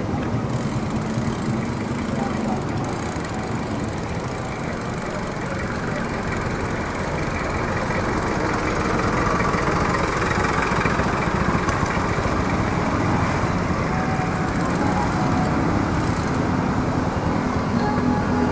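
Steady rushing wind and road noise on an action camera's built-in microphone during a bicycle ride, mixed with the running engines of nearby street traffic. It swells slightly about halfway through.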